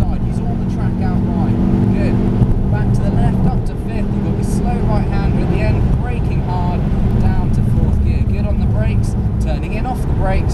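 Ford Focus RS's turbocharged engine running hard under full throttle in fourth gear, heard from inside the cabin. The engine note eases briefly about four seconds in, then picks up again.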